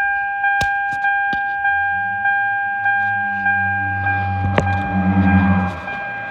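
2004 Toyota Camry's dashboard warning chime dinging over and over, a little under twice a second. A low hum joins about two seconds in and stops shortly before the end.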